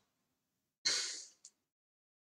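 A man breathing out audibly into a close microphone, a short sigh-like exhale about a second in, followed by a faint click.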